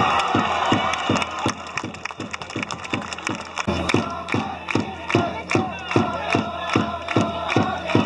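Football supporters' drum beating a steady rhythm, about three to four strikes a second, with a crowd of fans chanting along.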